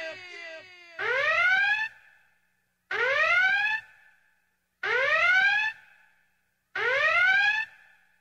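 Electronic alarm-like sound effect: a rising tone just under a second long, sounding four times about two seconds apart.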